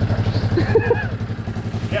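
Honda Big Red ATC 200 three-wheeler's single-cylinder four-stroke engine idling steadily with an even, rapid pulse, running on vegetable oil in place of engine oil and sounding totally fine.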